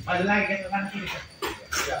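Human voices: a drawn-out call that wavers in pitch in the first second, then short bits of speech near the end.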